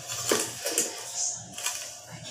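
Aluminium spirit level set down and shifted on a glazed porcelain floor tile: a few light clicks and scrapes, with sharp clicks near the start and again past the middle.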